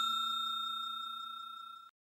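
A bell-chime sound effect ringing on after being struck and fading steadily, then cutting off suddenly near the end.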